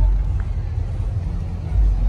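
Low rumble of car engines running, easing off briefly about a second and a half in.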